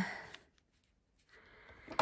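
The end of a woman's spoken phrase, then near silence with faint paper handling on a craft mat, and one sharp click near the end.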